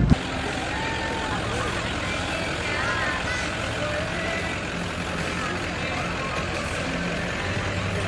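Pickup truck engine running at low speed as it tows a parade float past, a steady low hum, with a few faint voices of onlookers over it.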